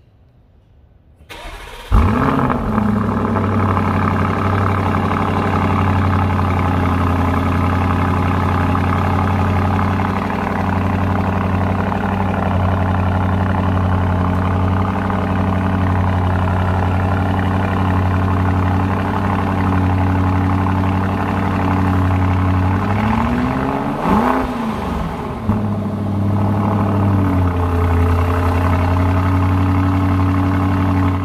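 Lamborghini Urus 4.0-litre twin-turbo V8 heard at its exhaust tips, starting up about two seconds in with a brief flare in revs, then settling to a steady idle. About three-quarters of the way through it gives one short throttle blip that rises and falls, then drops back to idle.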